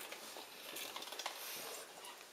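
A few faint, light clicks and taps on a tiled floor as a Norwegian forest cat kitten bats a small ball about.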